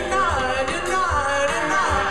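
Post-punk band playing live: a male singer's held, wordless vocal slides down in pitch twice over guitars, drums and keyboards.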